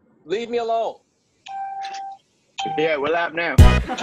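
A short voice, then a steady electronic chime tone held for under a second with a brief repeat, then more voice. Near the end, loud music with a heavy beat comes in.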